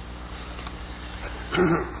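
Steady low hum and hiss of an old courtroom recording, with a short laugh about a second and a half in.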